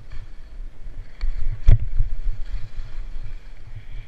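Wind buffeting the microphone of a camera carried by a skier moving downhill, an uneven low rumble. A single sharp knock about a second and a half in.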